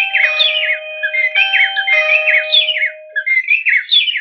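Wi-Fi video doorbell chime ringing after its button is pressed: an electronic melody of quick, chirping rising whistles over a couple of held steady tones, lasting about four seconds.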